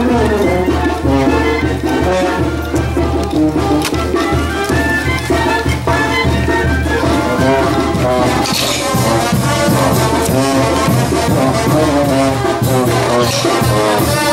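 Live brass band playing lively dance music, a brass melody over a steady bass line.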